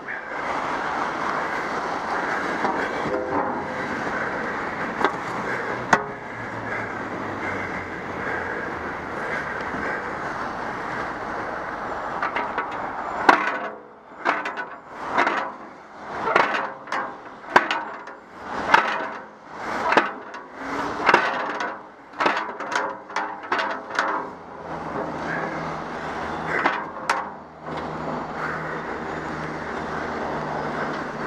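Steady rushing noise of motorway traffic below. About midway it gives way to roughly a dozen rhythmic rough surges, about one a second, while a metal cycle-route road sign is forced round by hand, and then the steady traffic noise returns.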